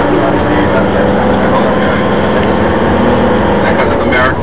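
Tour bus engine and road noise heard from inside the moving bus, a steady drone.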